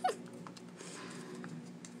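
Round tarot cards being handled on a glass tabletop: faint sliding and a few light taps over a low steady hum. A short falling voice-like sound comes right at the start.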